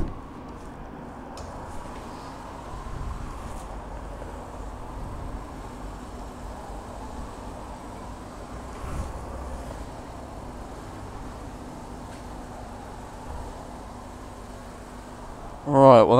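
Petrol pump dispensing fuel into a motorcycle's tank: a low steady hum under a rush of noise that stops shortly before the end.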